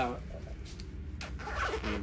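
A rain jacket's two-way zipper being worked by hand, with a short rasp a little past a second in.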